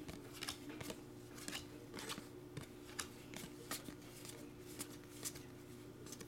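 Panini Hoops basketball cards being flipped through by hand: faint slides and flicks of card against card as each one is moved off the stack, about twice a second, over a low steady hum.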